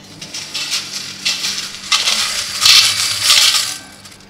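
Draw tokens rattling and clattering inside a large stainless steel pot as it is shaken to mix them before a token is drawn, growing louder in the second half.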